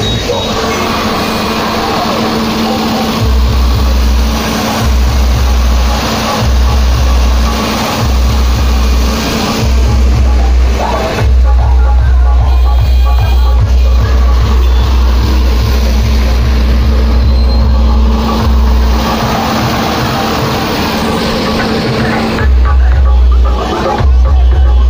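Bass-heavy DJ music played loud through a truck-mounted sound system of stacked bass cabinets and horn speakers. Deep bass comes in short pulses about a second long from about three seconds in, then holds for about eight seconds, drops out, and returns near the end.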